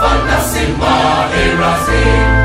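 Large mixed choir singing a gospel song in several parts, with electric keyboard accompaniment and a steady low bass note underneath.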